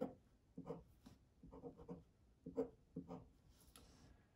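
Faint pen strokes on paper drawing short straight lines, one brief scratch after another, with a quick run of several close together near the middle.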